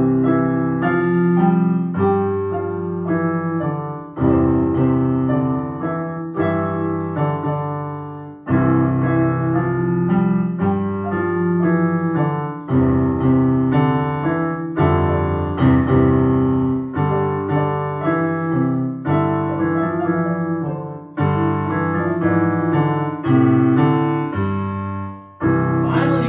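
Electronic keyboard in a piano voice, played as a duet by two players at once: sustained chords and a melody line, in phrases that begin with a fresh chord about every four seconds.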